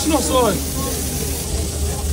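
Steady hiss with a low rumble underneath, without clear events, after a few words at the start.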